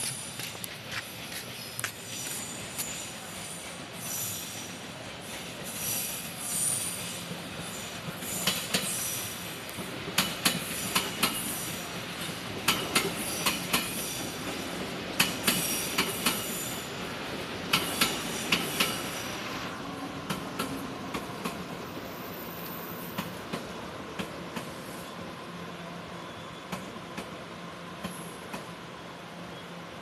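A Taroko Express tilting electric multiple unit pulls into the station. Its wheels clack sharply over rail joints and points, with high wheel or brake squeal, densest in the middle. Later the clacks thin out to a steadier hum as the train slows toward a stop.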